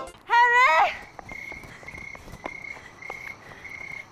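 A single loud shouted call from a person, rising in pitch and about half a second long, near the start. After it, crickets chirp in short, steady bursts.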